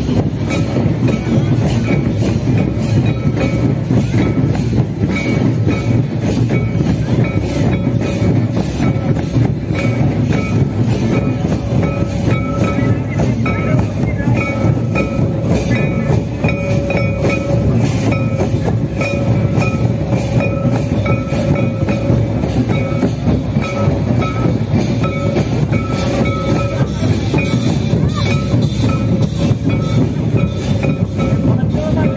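Several slung barrel drums played together in a fast, unbroken beat, with a steady held tone sounding over the drumming on and off.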